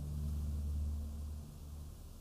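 A low, steady hum that fades out about one and a half seconds in.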